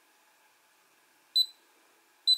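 One short, high electronic beep about 1.4 s in from the RunCam Split FPV camera, confirming a button press as it steps out of a submenu of its on-screen settings menu. Under it is a faint steady hum.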